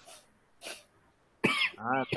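A person coughing and clearing their throat over a video-call audio line: two short, faint bursts, then a sudden louder one near the end.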